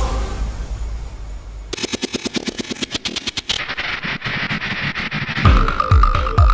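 Electronic soundtrack music. A low drone gives way, about two seconds in, to a rapid-fire run of fast clicks building up for several seconds. Near the end a heavy kick-drum beat with a sustained high synth tone comes in.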